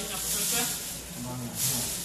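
Quiet, indistinct talking among several people, with short bursts of hiss.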